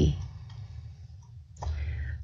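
The last syllable of a man's voice, then a pause holding only a low steady hum and faint background noise on a video-call microphone.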